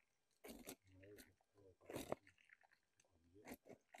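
Faint crunching of a blade breaking into the crumbly, wood-like galleries of a termite nest, a few separate crunches.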